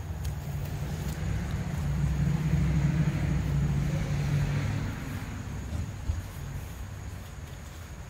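A motor vehicle passing by: a low rumble that swells about two seconds in and fades away by about five seconds.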